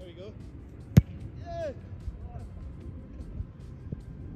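A soccer ball struck hard by a foot about a second in, a single sharp thump that is the loudest sound, followed by a short high call from a player; a fainter knock comes near the end.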